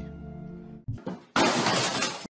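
Faint held music notes that stop just under a second in, followed by a loud glass-shattering sound effect lasting about a second that cuts off abruptly.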